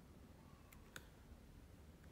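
Near silence: room tone, with two faint clicks a quarter of a second apart near the middle, computer clicks as the course pages on a laptop are navigated.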